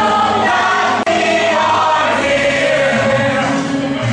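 A stage chorus of many voices singing a show tune together, with a sharp momentary dropout in the sound about a second in.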